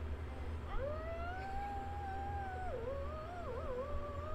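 A cat yowling: one long drawn-out call starting about a second in, then wavering up and down near the end. It is the complaint of a cat that has had enough of being pestered.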